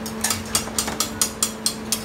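A quick run of sharp metallic taps, about four to five a second, of cooking utensils knocking against pans at a serabi stove, over a steady low hum.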